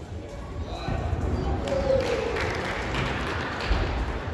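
Indistinct voices echoing in a large gymnastics hall, with a dull thud near the end.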